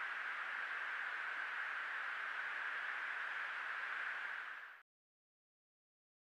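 Steady static hiss of the fighter jet's cockpit radio recording with no voices over it, fading slightly and cutting off just before five seconds in.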